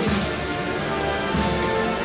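A procession band playing a slow processional march: held chords over a regular drum beat that falls about once a second, with cymbal hiss.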